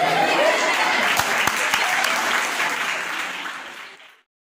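An audience applauding, with some voices mixed in; the clapping fades out near the end.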